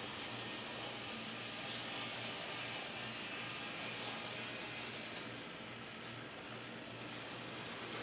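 Faint steady hiss with a low hum beneath it: small N-gauge model streetcars running around the track. A single small click about five seconds in.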